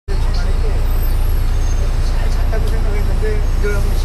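Steady low rumble of a moving vehicle and road traffic, with voices talking faintly over it.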